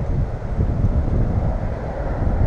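Wind buffeting an action-camera microphone: an uneven low rumble with no voices.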